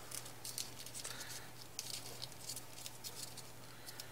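Folded paper origami units rustling and scratching faintly as fingers push them into each other, a scatter of short crinkly ticks.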